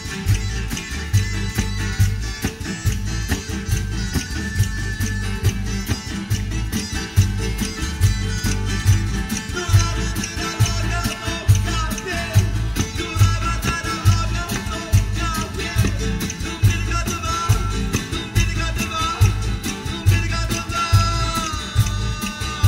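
Live Southern Italian folk band playing: several acoustic guitars strummed over a steady drum-kit beat, with a voice singing from about ten seconds in.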